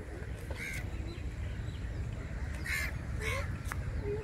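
Three short bird calls, one about a second in and two close together near the end, over a steady low rumble.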